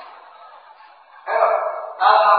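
A man's voice: a brief pause in the talk, then speech resumes a little past the middle.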